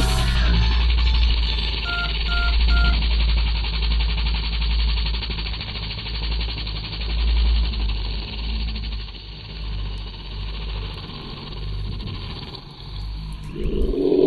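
Steady rushing wind noise over the microphone with a heavy low rumble, and three short electronic beeps about two seconds in.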